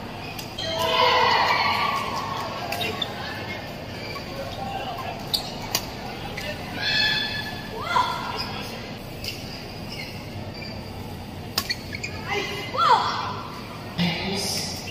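Indoor badminton hall din of echoing voices and chatter, with a few sharp clicks of rackets striking shuttlecocks and short squeaks of court shoes on the floor.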